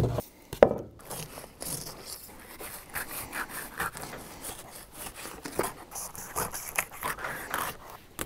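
Knife slicing and scraping through walleye as it is filleted on a cutting board: a run of short, irregular scraping strokes, with a couple of knocks near the start.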